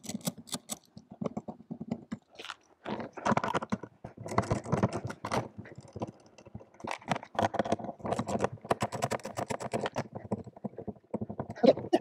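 Hands and tools working at the old rooftop TV antenna's plastic housing to take it apart: irregular clicks, scrapes and crunches.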